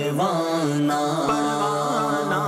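Urdu devotional kalam (naat) sung by a solo voice in long, wavering melodic phrases over a steady low drone.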